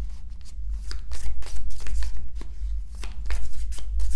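A deck of large oracle cards being shuffled by hand: a quick run of soft card slaps and flutters, about three or four a second, over a steady low hum.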